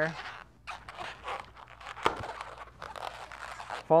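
Latex 260 modelling balloon rubbing and squeaking under the hands as it is folded over, in short irregular rustles with one sharper click about halfway through.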